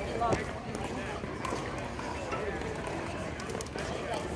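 Indistinct background voices, too faint to make out words, over steady outdoor noise, with a few sharp clicks.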